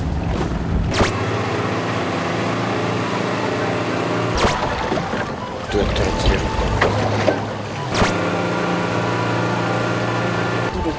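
A fishing boat's engine running steadily, with wind and sea noise over the open water. Sharp breaks about a second, four and a half and eight seconds in change the sound abruptly.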